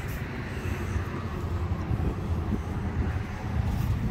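A low, steady outdoor rumble with no distinct events.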